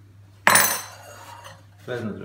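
A kitchen knife set down with one sharp metallic clatter about half a second in, ringing briefly as it fades.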